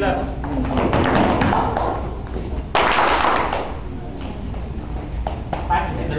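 Dancers' feet thudding and tapping on a hard hall floor as couples turn, under indistinct voices. A sudden loud burst of noise comes about three seconds in and fades within a second.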